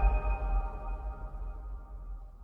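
Electronic logo sting ringing out: a held chord of steady tones over a deep bass rumble, slowly fading away.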